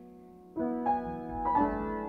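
Piano music playing as background. A held chord fades away, then new notes are struck about half a second in and again about a second and a half in, each dying away.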